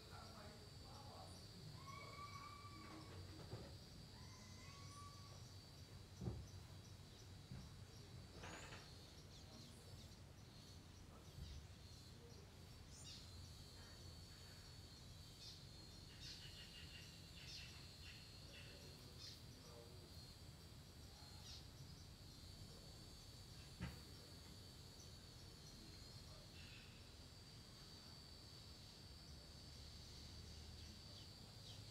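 Near silence: faint garden ambience with a steady high-pitched whine throughout and a few short bird chirps in the first few seconds. Two soft knocks stand out, the louder about six seconds in.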